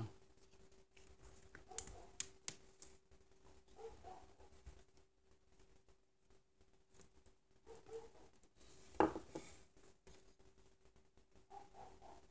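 Faint handling sounds of a Victorinox Swiss Army knife's wire stripper working on insulated copper wire: a few sharp clicks about two seconds in, scattered light scrapes, and one louder click about nine seconds in.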